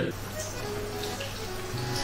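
Aubergine strips frying in hot oil in a frying pan, a steady sizzling hiss, with background music underneath.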